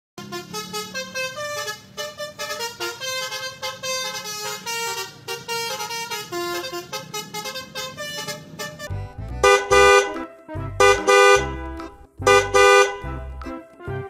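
Upbeat music for about nine seconds, then a vehicle horn honking in three pairs of short blasts.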